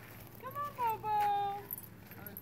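A woman's high, wordless sing-song call that rises and then holds one note for about half a second.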